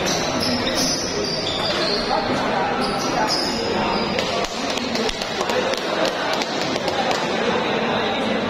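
Table tennis ball clicking off paddles and table and bouncing, a string of short sharp ticks, over steady background voices in a large hall.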